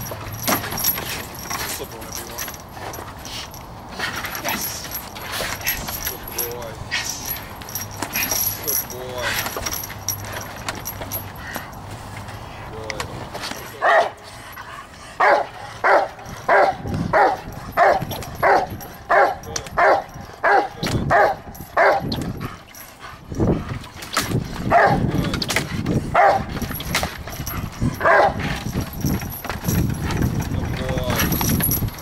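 A Rottweiler barking at the protection helper. From about halfway through the barks come in a steady run of about two a second, then more loosely spaced. The first half holds only scattered knocks and rattles of the leash chain while it grips the sleeve.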